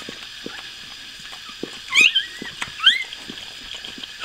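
Newborn puppy squeaking: two short, high, rising squeals, around the middle and about a second later, while its mother licks it with a run of soft, wet licking clicks.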